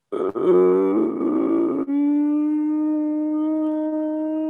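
A person humming a long thinking 'hmmm'. The pitch wavers for about the first two seconds, then is held steady on one note.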